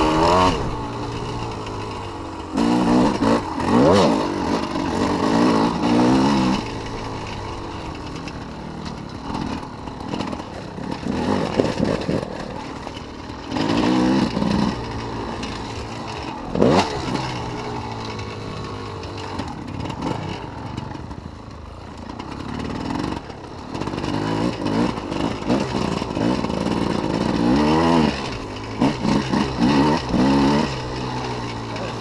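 Enduro dirt bike engine heard close from on board, revving up and down again and again under hard acceleration and backing off through corners, with louder surges every few seconds.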